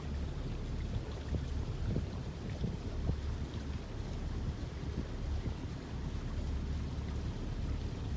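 Wind buffeting the microphone, giving an uneven low rumble.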